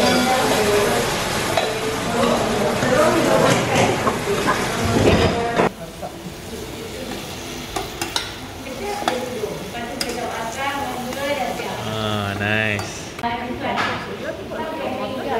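A little water poured into a hot stainless steel pan of frying aubergine, onion and spice powder, hissing and sizzling loudly as it hits the oil. About five and a half seconds in it cuts off suddenly, giving way to quieter stirring and scraping of a spoon in a simmering curry pot.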